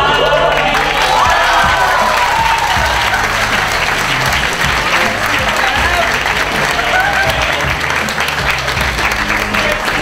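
A crowd of students clapping over a pop backing track, with a group singing the song's chorus.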